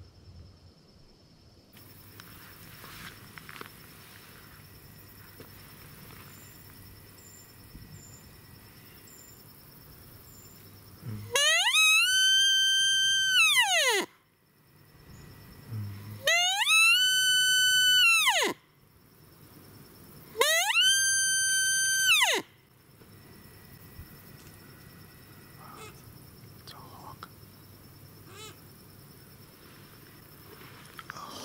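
Handheld sika deer call blown three times. Each call is a loud whistle that sweeps up, holds a high note for about two seconds and drops away, imitating a sika stag's rutting peel.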